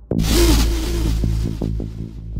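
Electronic dance music: the drum-machine kicks drop out and a sudden burst of hiss-like noise hits and fades away over about a second and a half, with a short wavering tone over a steady bass note. Lighter beats come back in near the end.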